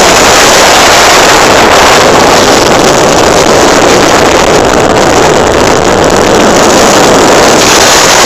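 Steady, loud rush of wind blowing over the microphone of a phone carried on a motorcycle moving at road speed, mixed with the motorcycle's engine and tyre noise.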